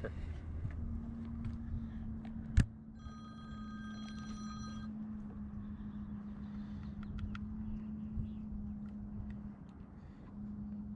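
A short electronic alert: several steady high tones sounding together for about two seconds, starting about three seconds in. It sits over a steady low hum, and one sharp click comes just before it.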